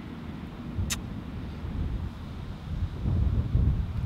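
Wind buffeting the microphone outdoors, a low uneven rumble that swells near the end. A brief high squeak comes about a second in.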